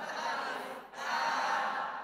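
A group of voices reciting Arabic words aloud together in chorus, reading word by word from a letter chart, with a short break between words about a second in.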